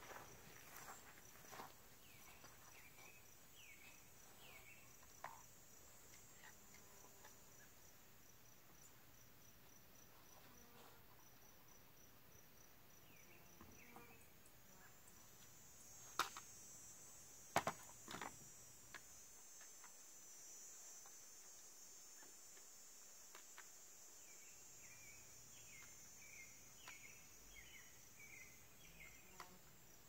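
Near silence outdoors: insects chirping steadily at a high pitch. Two sharp clicks about halfway through, as a rifle is handled.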